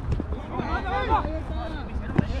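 Men's voices calling out across an outdoor soccer pitch during play, with a steady low rumble of wind on the microphone.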